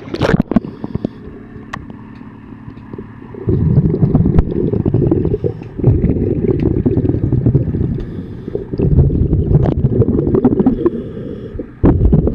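Underwater sound of a diver's exhaled breath bubbling out of the regulator, in loud low rushes of two to three seconds each with short breaks between them, beginning about three and a half seconds in. Sharp clicks and knocks from gear against the hull and propeller run throughout.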